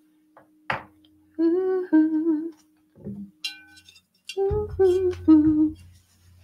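A crystal singing bowl's steady tone dies away, with a single knock about a second in. Over it a woman hums a few short notes, twice.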